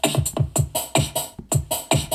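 Generic drum-machine beat from the Fiestable app's rhythm sample, played through a Sony SRS-XB33 Bluetooth speaker: a quick, steady run of kick drums that drop in pitch, each with a sharp hi-hat tick.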